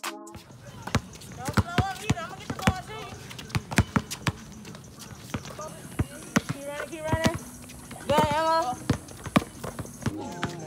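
Basketballs bouncing on an outdoor hard court, irregular sharp thuds several times a second, with short voices calling out now and then.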